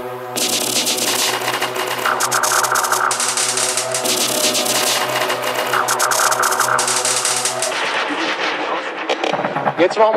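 Section of a dark techno track: a dense, rapid clatter of sharp clicks over a steady low hum, coming in suddenly about half a second in and thinning out near the end.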